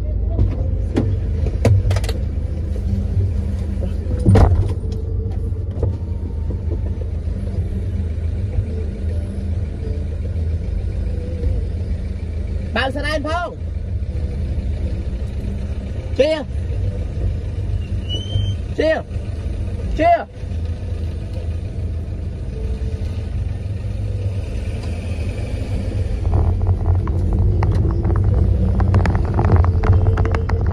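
Steady low rumble of a car heard from inside its cabin, growing a little louder near the end as it pulls away. A couple of sharp knocks come in the first few seconds.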